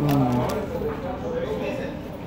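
Voices talking, opening with a short low voice sound with a falling pitch, followed by quieter talk.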